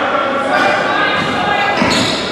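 Basketball bouncing on a hardwood gym floor amid indoor game noise: voices from players and the crowd echoing through the hall, with a few sharp bounces near the end.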